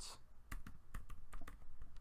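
Typing on a computer keyboard: about seven separate keystrokes, starting about half a second in.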